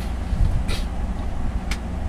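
Steady low rumble and hum in the background, with a brief soft hiss a little under a second in and a small click near the end.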